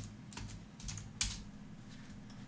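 Computer keyboard typing: a handful of separate keystrokes, the loudest about a second in, over a faint low steady hum.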